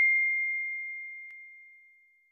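Notification-bell ding sound effect from a subscribe-button animation: one clear high tone, struck just before, dying away and gone near the end. A faint tick sounds about a second and a half in.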